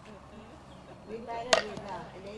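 A single sharp knock about one and a half seconds in, over people talking.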